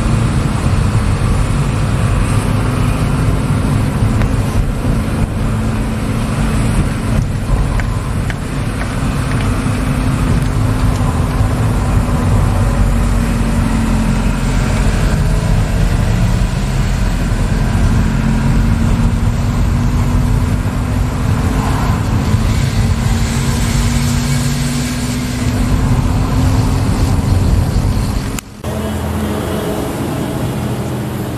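Engine and tyre noise of a moving road vehicle climbing a winding highway, its engine note slowly rising and falling with speed. Near the end it cuts off suddenly to a quieter steady background.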